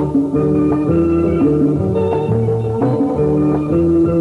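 Somali band music, instrumental: a plucked electric guitar melody over bass guitar and drums, with steady held notes and a walking bass line.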